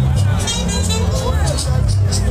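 Live band music with a held bass line and percussion, with voices and crowd chatter mixed in.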